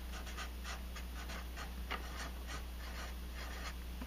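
Black marker pen writing a word on paper: a quick run of short scratchy strokes, over a steady low hum.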